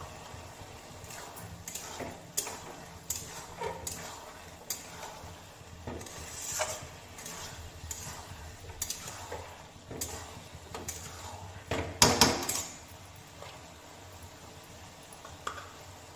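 A metal spatula scraping and clacking against a metal kadai as chickpeas and potatoes are stirred with spices, in irregular strokes. The loudest cluster of scrapes comes about twelve seconds in.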